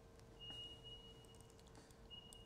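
Faint electronic alert beeper, the station's weather-alert 'dinger': one steady high beep about a second long, starting about half a second in. It is part of a repeating beep pattern, with a faint low hum underneath.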